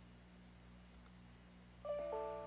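Faint steady low hum, then near the end a short bright chime sounds: a chord of clear ringing notes, with a second chord following straight after it.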